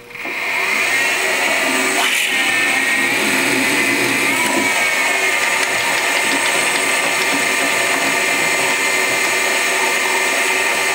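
Milling machine spindle running with a twist drill boring into a metal block. It is a loud, steady machine whine with high tones that builds up over the first second and then holds.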